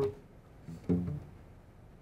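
Classical guitar: a strummed chord is cut off at the start, then two short low plucked notes about a second in ring briefly and fade.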